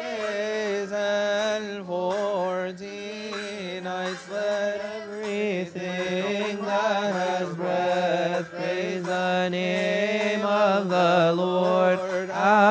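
Coptic Orthodox hymn chanted in unison, a long sustained melodic line with wavering ornaments on held notes, accompanied by repeated sharp strikes.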